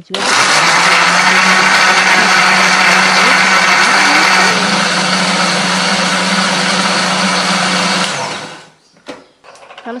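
Electric countertop blender running at full speed, grinding chillies, shallots, garlic and turmeric with a little water into a spice paste. It starts at once and runs steadily for about eight seconds, a little quieter from about halfway as the mix turns smooth, then is switched off and winds down.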